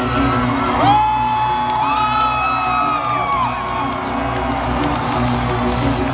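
Recorded electronic intro music playing over a concert PA with a steady low pulse, while fans in the crowd whoop and cheer for a couple of seconds starting about a second in.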